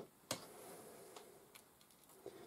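Near silence with a few faint small clicks, one about a third of a second in and another near the middle.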